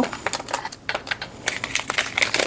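Long fingernails clicking and tapping on plastic packaging, with some light crinkling, as small items are picked out of a box. The clicks come in quick irregular clusters, easing off briefly in the middle.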